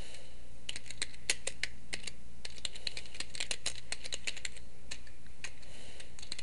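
Typing on a computer keyboard: a quick, uneven run of key clicks starting just under a second in and lasting about five seconds.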